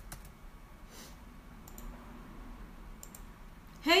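A handful of faint, scattered clicks from a computer keyboard or mouse being worked, a few at a time with gaps between them. A woman's voice starts right at the end.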